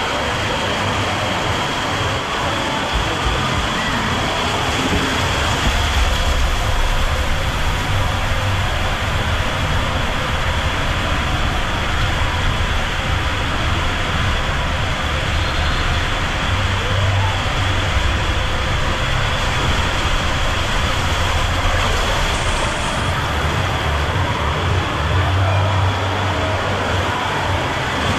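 Rider sliding down an enclosed plastic tube waterslide: rushing water and the body skimming the tube make a loud, steady rushing noise with a deep rumble throughout.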